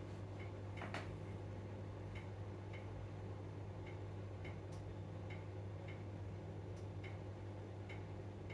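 Faint room tone: a steady low hum with soft, unevenly spaced ticks.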